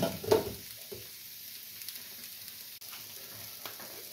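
Sliced potatoes sizzling steadily as they fry in a pan, with a short sharp clatter near the start.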